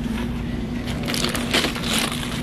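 Plastic shrink-wrap and bottles of a case of bottled water crinkling and crackling as it is grabbed and handled, with several sharper crackles about a second in. A steady low hum runs underneath.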